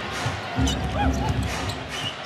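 Arena crowd noise from an NBA game, with a basketball being dribbled and sneakers squeaking on the hardwood court.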